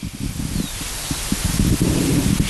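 Wind buffeting an outdoor microphone: an uneven low rumble under a steady rushing hiss.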